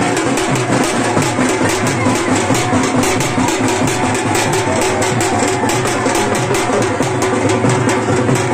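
Loud music with a fast, steady drumbeat, about four to five strokes a second.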